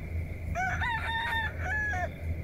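A rooster crowing once, a cock-a-doodle-doo of several syllables beginning about half a second in, over a steady high-pitched tone and a low hum.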